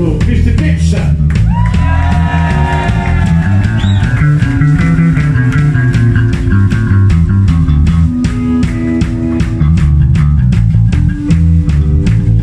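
Live punk rock band playing: drums, electric bass and guitar. A long sung note is held from about a second in.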